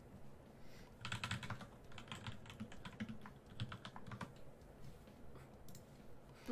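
Typing on a computer keyboard: a quick burst of keystrokes from about a second in until about four seconds in, then it stops.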